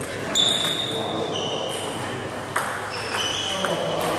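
Table tennis balls bouncing and striking in a large sports hall: several short, high, ringing pings, the loudest about a third of a second in, and a sharp knock about two and a half seconds in, over a murmur of voices.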